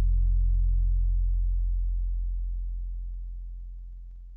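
A single deep bass note left over from the hip-hop beat, held and fading steadily away as the track ends.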